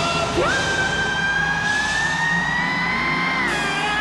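Electric guitar in a live hard rock band: two fast upward swoops into a high held note that slowly bends upward for about three seconds, then drops in pitch near the end.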